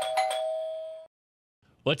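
Two-tone, doorbell-like chime sound effect of a show's logo sting, ringing and fading away about a second in.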